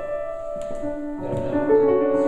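Grand piano being played: held notes ringing on, then new notes entering one after another from about the middle, building into a fuller, louder chord near the end.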